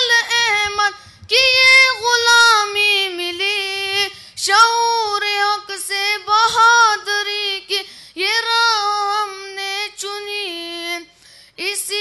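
A high solo voice sings an Urdu tarana (devotional anthem) with no instruments heard. It sings long held notes that bend and waver, in phrases of one to three seconds with short breaths between.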